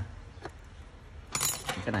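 A short, bright metallic clink about one and a half seconds in as tweeter compression-driver parts are picked up off the workbench, with a faint tick before it.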